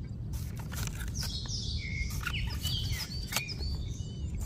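Small birds chirping, with several sharp knocks of a cleaver chopping into a husked young coconut, the loudest about three seconds in, over a steady low rumble.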